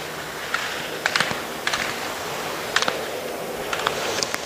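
Slalom gate poles being struck by a skier cross-blocking through the course: about eight sharp clacks, several in quick pairs, over a steady hiss.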